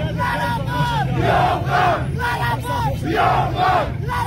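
A large crowd shouting and chanting, many voices overlapping in loud rising-and-falling calls, over a steady low rumble.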